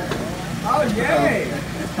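A short hesitant 'uh' and other voices over a steady low mechanical hum.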